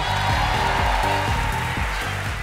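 Studio audience applauding and cheering over background music with a steady bass line.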